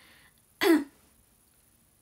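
A woman's single short laugh: one quick, breathy burst about two-thirds of a second in.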